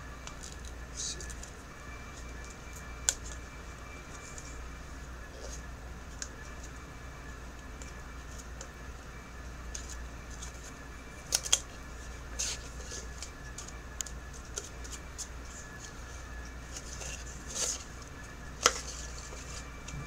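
Handling noise from a clear plastic design-your-own tumbler being taken apart: a few sharp plastic clicks and short paper rustles from its paper insert, over a low steady hum.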